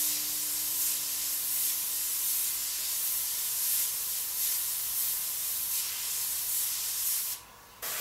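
Gravity-feed airbrush spraying paint: a steady hiss of air through the nozzle that swells and eases with each short dagger stroke, stopping about seven seconds in, with one brief burst just after.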